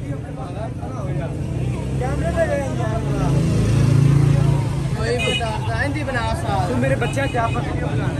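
Men's voices chattering over a low engine drone that grows louder toward the middle and then eases off.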